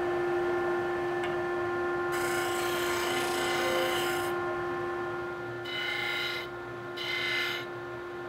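Electric disc sander running with a steady motor hum while wood is pressed against the spinning abrasive disc, giving a rasping hiss each time. There is one long stretch of sanding about two seconds in, then two shorter ones near the end.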